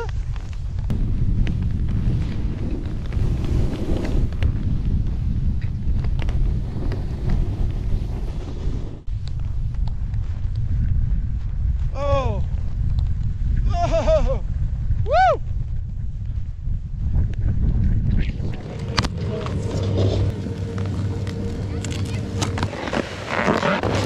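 Snowboard riding through powder, heard as a steady low rumble of board and wind on the camera's mic, with the click-clack chatter of Burton Step On bindings in it. A few short whoops from the rider come in the middle, and a steadier hum takes over near the end.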